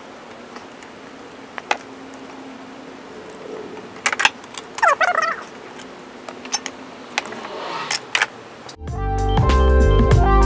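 Metal tool clinks and clicks from a socket wrench loosening spark plugs on a Volkswagen 1.8T four-cylinder engine, with a brief squeak about five seconds in. Loud background music with a beat starts near the end.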